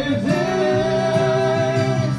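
Several male voices singing together into microphones, holding one long note over strummed acoustic guitar.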